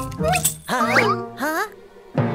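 A cartoon character's wordless, buzzy vocalizing in several short phrases, the pitch swooping quickly up and down.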